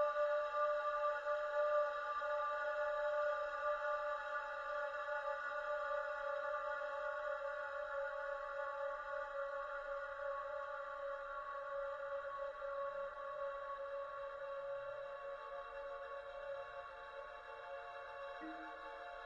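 Contemporary classical chamber music: a held chord of several steady, pure tones that slowly fades away.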